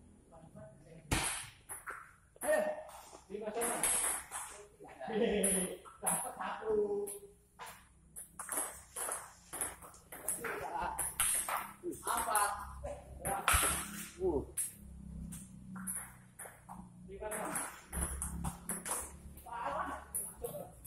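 Table tennis rallies: a plastic ball clicking off the paddles and bouncing on the tables in quick, irregular runs of sharp ticks, with short pauses between points.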